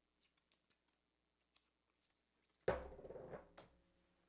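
Trading cards and pack wrappers being handled: a few faint clicks and crinkles, then a sudden louder knock and rustle about two-thirds of the way through that lasts about a second.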